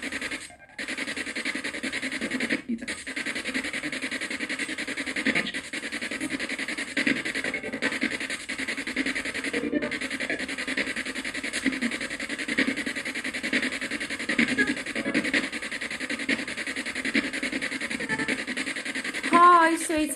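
Spirit-box (ghost box) radio sweep played through a small speaker: a continuous stream of choppy static and clipped voice fragments, cutting out briefly about half a second in, near three seconds and near ten seconds.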